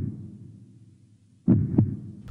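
A dramatic heartbeat sound effect: a deep thump that fades at the start, then a quick double thump, like a heartbeat, about a second and a half in.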